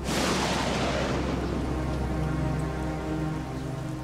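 A thunderclap that hits suddenly and dies away over about three seconds into a rain-like hiss, over a low sustained music drone.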